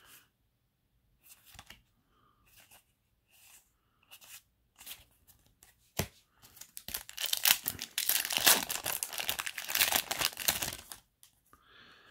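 Foil Yu-Gi-Oh! booster pack wrapper crinkling and tearing open for about four seconds, starting roughly seven seconds in. Before it come a few faint taps and slides of trading cards being handled.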